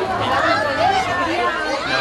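Lively chatter of many overlapping voices, children's high voices among them, from a crowd of walking children and onlookers.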